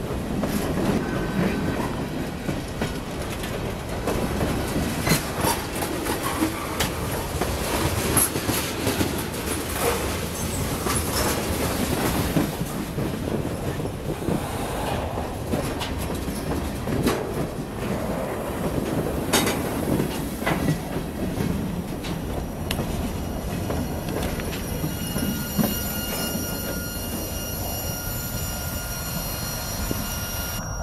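Freight cars of a Norfolk Southern manifest train rolling past close by: a steady rumble of steel wheels on rail, broken by many sharp clicks and clacks. Thin high steel-wheel squeal comes in near the end as the last cars pass.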